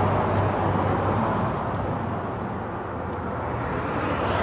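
Low, steady rumble of vehicle engines and road traffic, easing off slightly toward the middle.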